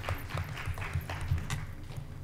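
Footsteps walking away from the microphone: a quick series of dull thuds, about three to four a second.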